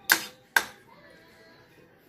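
Two sharp metallic clinks about half a second apart, each ringing briefly: a metal spoon striking the aluminium wok as the vegetables are stirred.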